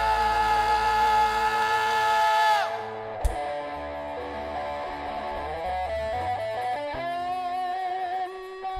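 Live rock band with electric guitar holding a loud sustained chord that cuts off about three seconds in, followed by a single sharp hit. After it, a quieter picked electric guitar line of changing notes carries on.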